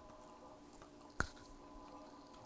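A person chewing food close to an earphone microphone, with one sharp click about a second in.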